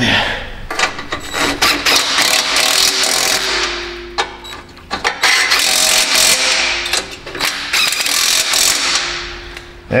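Power saw cutting through a rusty exhaust pipe, in two long runs that each trail off at the end.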